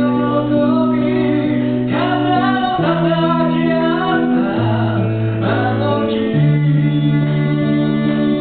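A man singing a slow ballad into a microphone, accompanied by guitar over long held low notes, a song that moves to a new chord every second or two.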